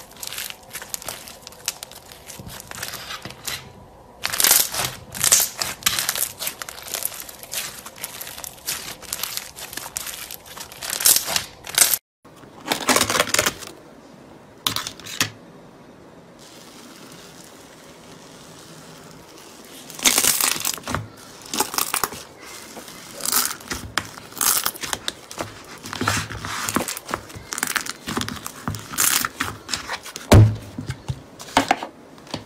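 Hands squeezing, stretching and poking slime, making dense crackling and popping clicks in bursts. There is a brief break about twelve seconds in and a quieter spell a few seconds later, then the crackling picks up again.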